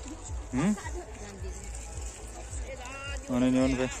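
Human voices: a short rising yelp about half a second in, then a loud drawn-out vocal cry held on one pitch near the end, with a steady low rumble underneath.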